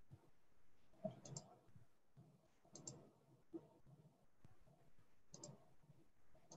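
Faint computer mouse clicks in quick pairs, three double-clicks spread over a few seconds, against near-silent room tone.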